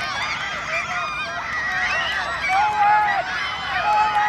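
Many high-pitched voices shouting and shrieking over one another, with no clear words. In the second half, two long, held calls stand out above the rest.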